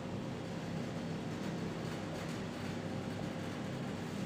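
Steady low hum and hiss of room noise, with faint scratching of a marker writing on a whiteboard around the middle.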